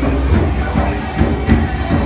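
Steady rushing of water cascading down the tiers of a large fountain, with a constant low rumble underneath.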